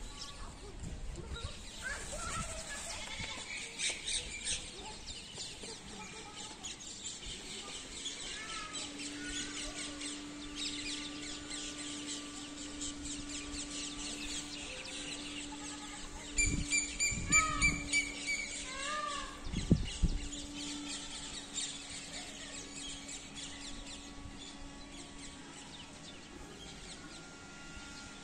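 Outdoor ambience with small birds chirping throughout. A steady low hum runs through the middle, and a cluster of louder calls and thumps comes about sixteen to twenty seconds in.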